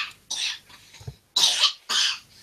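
A man coughing twice, in two short breathy bursts about a second apart.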